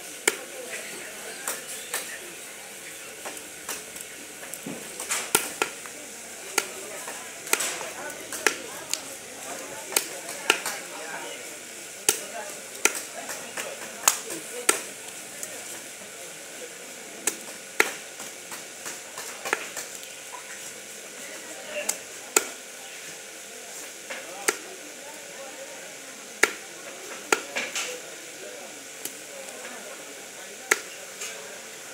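Heavy knife chopping a large catfish into pieces on a wooden log chopping block: sharp chops at irregular intervals, roughly one a second.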